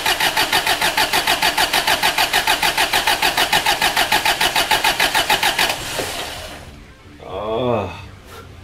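Starter motor cranking a Mazda WL-T four-cylinder turbo diesel that does not fire, its glow plugs out for a compression test on cylinder four: a fast, even pulse of about six beats a second that stops about six seconds in.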